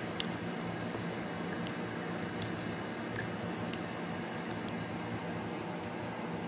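Small clicks and rustles of an alligator clip and test lead being handled and clipped onto the coil's thin wire end, half a dozen faint clicks with the sharpest about three seconds in, over a steady background hiss.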